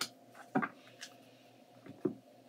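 Tarot cards being shuffled by hand, heard as a few soft, separate taps and slaps of the cards, the clearest about half a second in.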